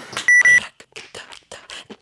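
A single short electronic beep, one steady high tone about a third of a second long. It is followed by beatboxed mouth percussion, a quick even run of soft clicks at about eight a second.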